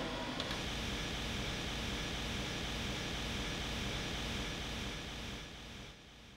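Steady hum and hiss of workshop machinery in a large machine hall, fading out near the end.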